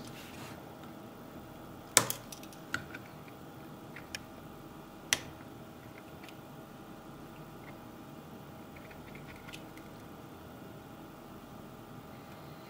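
Knife blade tip clicking and scraping against the small plastic housing and rubber feet of a water leak sensor as it is probed and pried. There are a few sharp clicks, the loudest about two seconds in, and smaller ones up to about five seconds in, over a faint steady hum.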